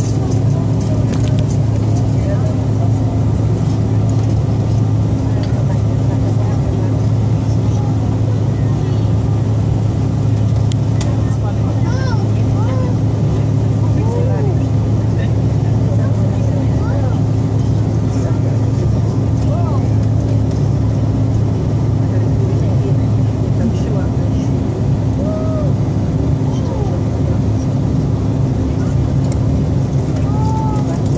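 Steady drone inside an airliner's cabin during the climb after takeoff: a low engine hum with a steady higher tone above it. Faint snatches of passengers' voices come and go over it.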